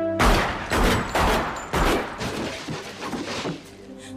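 A semi-automatic pistol fired repeatedly in quick succession, the shots about half a second apart. The first four are the loudest, followed by a few fainter ones.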